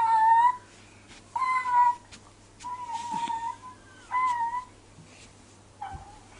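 A small child's high-pitched voice making about five separate held, steady-pitched calls, each half a second to a second long, with a few faint clicks between them.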